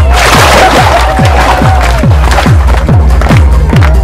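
Background dance music with a steady beat of deep kick drums that drop in pitch, about two and a half a second. A rush of noise comes in over it in the first second or so.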